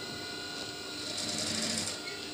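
Sewing machine stitching a patch pocket onto a shirt front. It runs in one short burst of rapid stitches from about a second in and stops near the end.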